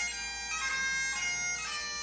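Highland bagpipe music: a pipe melody moving from note to note over a steady drone.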